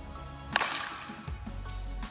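A softball bat hitting a tossed softball once: a single sharp crack about half a second in. Background music with a steady beat plays throughout.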